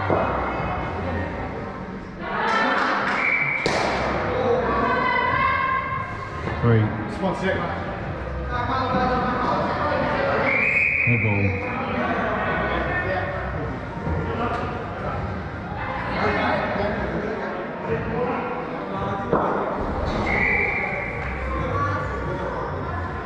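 Players calling and shouting across an indoor cricket hall, with a few sharp knocks and thuds of the cricket ball against bat, pitch and netting, a cluster of them a few seconds in and another near the middle. The large netted hall makes everything echo.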